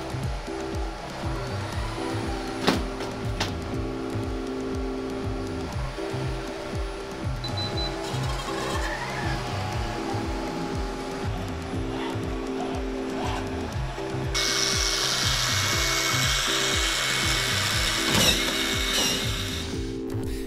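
Background music with a steady beat over the working sounds of a humanoid robot handling a plasterboard panel against a wooden frame, with a couple of sharp knocks early on. About fourteen seconds in, a steady high whirring hiss of machinery joins, as the robot brings its power screwdriver to the board.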